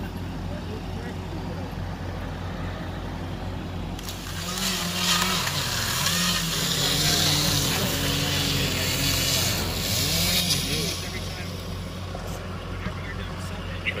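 Steady low hum of an idling fire engine running its pump. From about four seconds to nearly eleven, a loud rushing hiss of a fire hose spraying water at the burning house, with voices over it.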